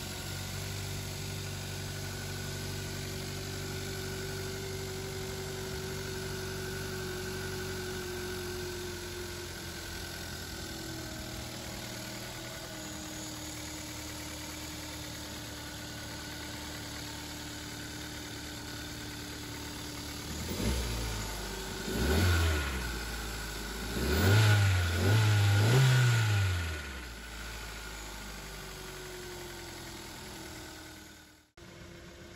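Kia Sportage 1.6 GDI petrol four-cylinder engine idling steadily, then revved in a few short blips, one and then two close together, about two-thirds of the way through, before dropping back to idle.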